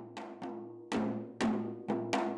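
Janggu, the Korean hourglass drum, struck with a stick about twice a second, five strokes in all, each leaving a low ringing tone.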